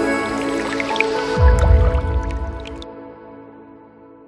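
Logo sting: sustained music with liquid dripping sound effects, a low falling hit about a second and a half in, then the music fading out.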